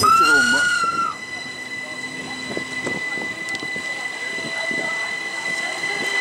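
Bernina Express train's wheels squealing on the rails, heard from inside the carriage: a loud high squeal for about the first second, then a fainter steady high whine over the rumble of the moving train.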